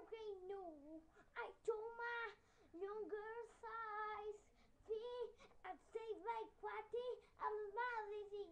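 A young boy singing unaccompanied: a tune in short phrases, with several notes held for about half a second.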